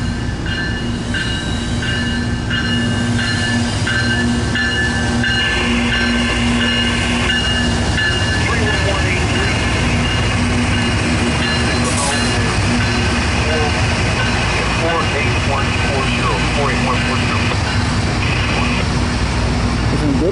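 CSX freight train's diesel locomotives passing close by at low speed, engines running over a steady rumble of wheels on rail, with steady high-pitched tones riding above.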